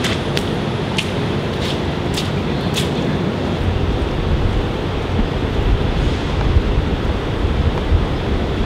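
Steady outdoor city street background noise: a low traffic rumble that thickens about halfway through, with a few faint high ticks in the first three seconds.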